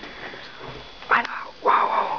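A dog barking: two short, loud barks about half a second apart, the second one longer.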